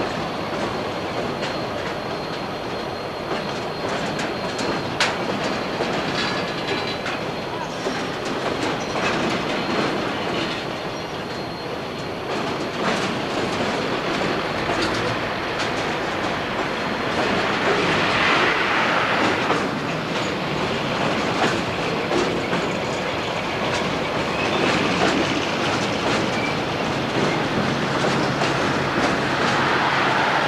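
Freight trains passing each other at a junction: wagons rolling by with a continuous rumble and a steady run of clicks and clatter from the wheels over rail joints and switches. The noise grows louder from about 17 seconds in.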